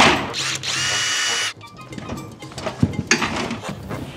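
A power drill runs for about a second, winding up quickly and then cutting off sharply. A few knocks and a low thump follow as work goes on at the wall.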